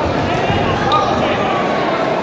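Spectators and corner coaches shouting around a kickboxing ring in a sports hall, with a couple of dull thuds from the fighters' exchange about half a second and a second in.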